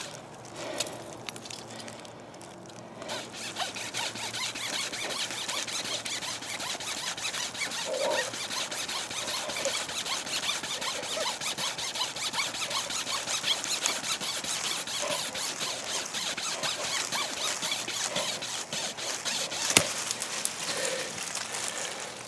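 A flexible pocket saw is drawn rapidly back and forth through a thin sapling trunk, making a continuous high, squealing rasp that starts about three seconds in. A single sharp crack comes near the end, as the cut goes through the trunk.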